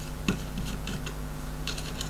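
A small screwdriver backing a screw out of a plastic toy base that holds a circuit board, giving faint, irregular ticks and clicks. A steady low electrical hum from the microphone runs underneath.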